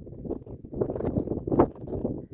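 Wind buffeting the microphone in uneven gusts, loudest about a second and a half in.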